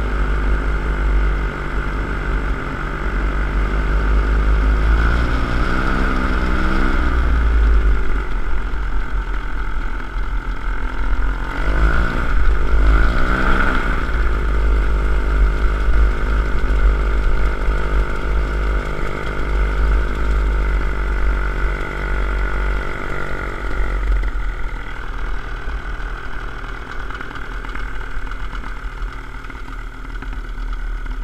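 Paratrike engine and propeller running steadily over a heavy low rumble of wind on the microphone. The engine note swings up and down twice, around six seconds in and again around twelve to fourteen seconds, then falls back to a lower, weaker note for the last few seconds as the trike lands.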